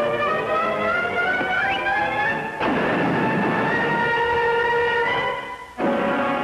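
Orchestral cartoon score holding sustained chords. About two and a half seconds in, a sudden burst of crashing noise cuts in briefly, the sound of the wall being smashed open.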